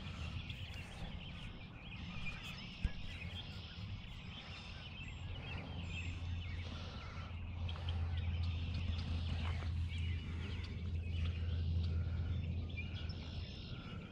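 Outdoor ambience: a steady low rumble, louder in the second half, with small birds chirping in the background and a single click a few seconds in.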